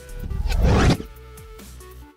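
A whoosh sound effect over steady background music: a rush of noise that swells for about a second and then cuts off sharply.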